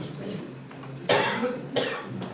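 A person coughing twice about a second in, the second cough shorter.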